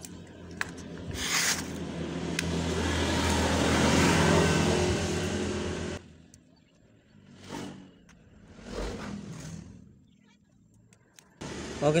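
A motor vehicle running past close by, its engine noise building to a peak about four seconds in and cutting off suddenly at about six seconds. Then two brief, soft scraping sounds as scissors strip the insulation off a thin wire.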